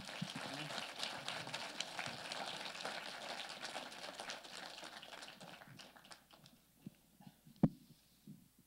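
Small congregation applauding, a patter of many hand claps that thins out and dies away after about six seconds. A single sharp knock follows near the end.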